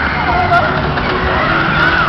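Mack Musik Express fairground ride running at speed, heard from a car on board: a loud, steady rushing noise over a low rumble as the cars go round the undulating track, with riders' voices calling out over it.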